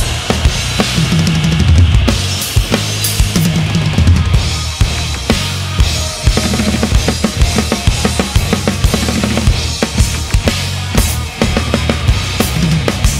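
Acoustic drum kit played in a fast, driving rock groove. Dense kick and snare hits run under a wash of Sabian and Paiste cymbals, with several strokes a second.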